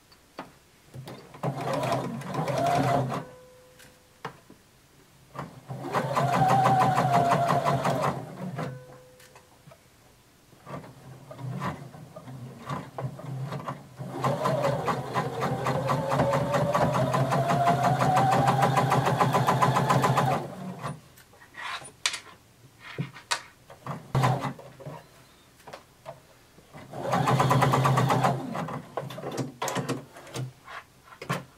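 Computerized sewing machine sewing a long basting stitch along a skirt side seam in four runs: two short runs, one longer run of about six seconds, then a short one near the end. The motor's pitch rises as it speeds up. Light clicks and handling sounds come between the runs.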